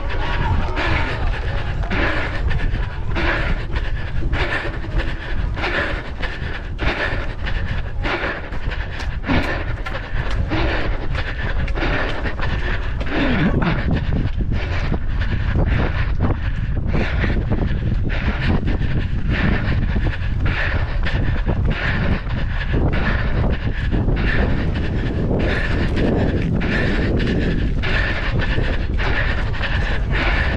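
A runner's footfalls on a synthetic running track, about three a second, with heavy wind rumble on the microphone and panting breath.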